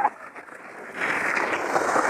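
Skis sliding and scraping across snow, a grainy hiss that turns loud about a second in as the skier moves off.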